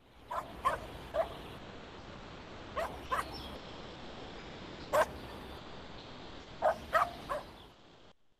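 A dog barking in short, irregular yaps over a steady background hiss, the loudest bark about five seconds in. It is a recorded sound effect in a textbook listening track, played over an online call.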